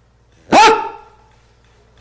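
A single loud, short voiced shout about half a second in, its pitch sweeping sharply at the start and then held briefly before it fades.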